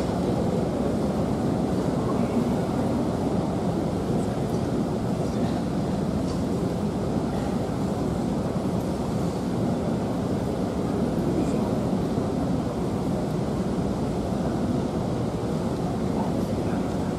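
Steady low background noise of a large indoor sports hall, with no distinct events.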